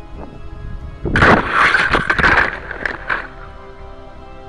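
Estes Fatboy model rocket, with its onboard camera, coming down into grass: a loud burst of rustling and knocks about a second in, lasting around two seconds, then it stops as the rocket comes to rest. Music plays under it throughout.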